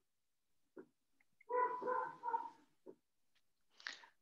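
A brief, high-pitched whine-like vocal sound lasting just over a second, with faint clicks shortly before and after it.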